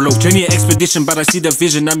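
Hip hop beat with a man rapping over it: deep bass notes a fraction of a second long and quick hi-hat ticks.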